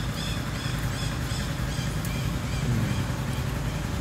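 Steady low hum of an idling engine, with a run of short high bird chirps, about two or three a second, in the first second and a half.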